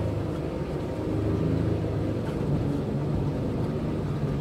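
Small car's engine running at low speed while the car wades through deep floodwater, heard from inside the cabin as a steady low drone.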